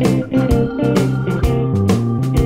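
Band music with a steady drum beat, guitar and bass under held organ-like chords.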